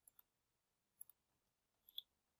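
A few faint computer mouse clicks over near silence, the last near the end, as pipes are selected on screen and a right-click menu is opened.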